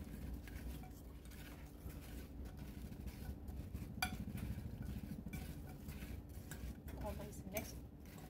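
Fork clinking and scraping against a casserole dish while tossing sliced apples with flour, sugar and cinnamon: irregular soft clicks, with a sharper clink about four seconds in.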